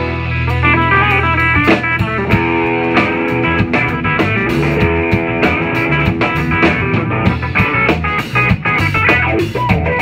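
Live blues-rock trio playing: electric guitar lead lines over electric bass and a drum kit, with the guitar holding long notes through the middle.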